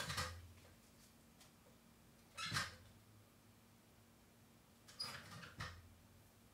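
Scissors cutting a paper label: a few short snips, one at the start, one about two and a half seconds in, and two close together near the end.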